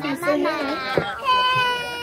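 A young child's high-pitched vocal squeal: a wavering cry for about the first second, then one long steady held note.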